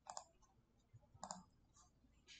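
A few faint clicks from working a computer against near silence: a pair of quick clicks near the start and another pair a little past the middle.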